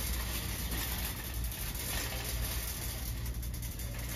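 Busy retail store background noise: a steady low hum and hiss with a few faint clicks and rattles.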